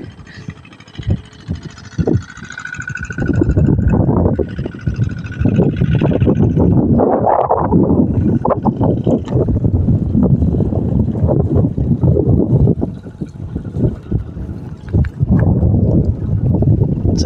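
Gusty wind noise on the microphone, loud and uneven, easing briefly at the start and again near the end.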